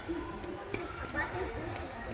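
Indistinct voices of people talking in a large hall, with no words clear enough to follow.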